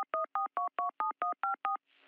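Telephone keypad touch-tones dialed in quick succession, about five short beeps a second. Each beep is a two-note tone whose pitches change from key to key. They stop shortly before the end.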